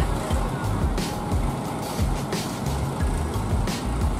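Background music over a Mercedes-Benz coach running at low speed as it pulls in and stops.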